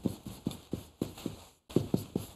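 Chalk writing on a chalkboard: a run of quick, irregular taps as the characters are written stroke by stroke, about five a second, with a brief pause midway.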